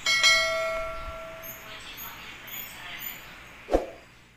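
Bell-chime sound effect of a YouTube subscribe-button animation. It rings out at the start and fades over about a second and a half, with a few short high notes after it and a sharp click near the end.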